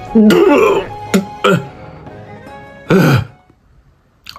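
A man clearing his throat and making short cough-like grunts, several bursts that fall in pitch, as he reacts to an intensely sour pickled plum (umeboshi). Background music plays under the first half and fades out.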